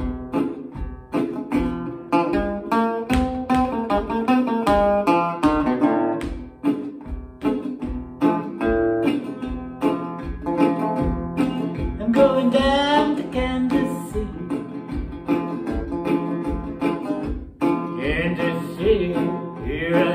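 Metal-bodied resonator guitar picked in a blues style, a steady thumbed bass beat under picked melody notes and chords. A man's singing voice comes in near the end.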